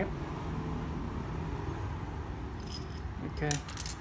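Small metal jingle bell on a nylon dog collar jingling with light clinks as the collar and ruler are handled, starting about two and a half seconds in.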